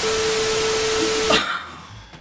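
TV static glitch transition sound effect: a loud hiss of static with a steady beep tone under it. It starts suddenly and cuts off after about a second and a half.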